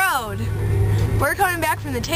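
A girl's voice swooping up and then down at the start, then quick, excited girls' voices about a second later, over the steady low hum of a car cabin.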